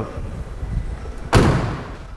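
A single heavy slam about a second and a half in, ringing briefly in a large room, over a low steady hum.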